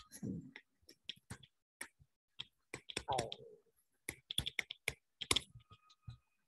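Faint, irregular clicks and taps of a stylus on a tablet as handwriting is added on screen, with a short hum of the voice about halfway through.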